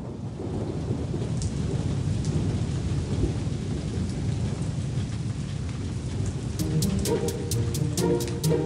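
Steady rain falling, with a low rumble of thunder underneath, as a cartoon sound effect. About six and a half seconds in, a light tune of quick plucked notes starts over the rain.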